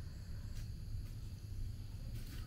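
Quiet outdoor ambience: a steady low rumble on the microphone under a faint, steady high-pitched drone of insects from the surrounding forest, with one faint tick about half a second in.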